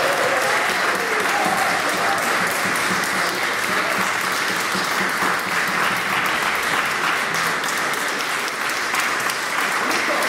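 Audience applauding steadily at the end of a live chamber performance, the ensemble's last string notes dying away in the first second.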